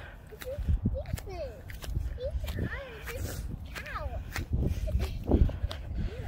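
Footsteps through dry grass, a series of soft irregular crunches and clicks, over a low rumble, with faint voices talking in the background.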